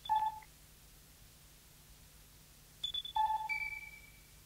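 Sparse, high electronic beeping tones, several pitches sounding together, in two short clusters: one at the start and one about three seconds in, each fading away. Between them there is only faint tape hiss. This is the sparse opening of a minimal synth track on a home-taped cassette.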